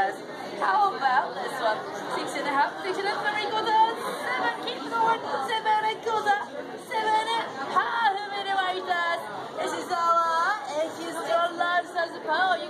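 Overlapping chatter of several people talking at once in a crowded room, with no single clear voice and no other distinct sound standing out.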